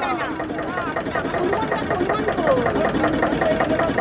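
Boat engine running steadily as the boat moves along the river, with people's voices talking over it.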